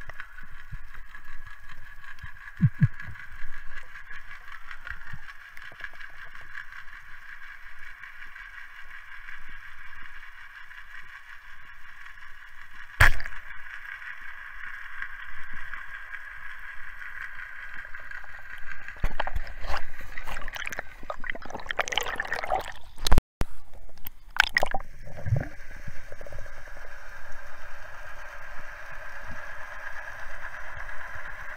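Underwater sound picked up by a diver's camera: a steady water hiss with gurgling and sloshing, a single sharp click about 13 seconds in, and a stretch of louder bubbling and sloshing a few seconds after that.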